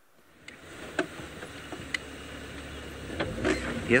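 An open safari game-drive vehicle's engine running as it drives along a dirt track. The sound fades in after a brief silence, with a couple of sharp knocks or rattles about one and two seconds in, and the rumble gets louder near the end.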